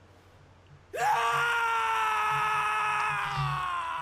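A long anguished scream starts suddenly about a second in, rising briefly, then held for about three seconds while slowly sinking in pitch.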